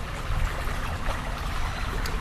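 Steady rushing outdoor background noise with an uneven low rumble underneath.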